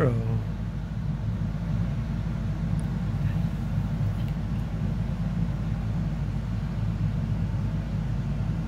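Steady low background hum, even throughout, with no distinct event.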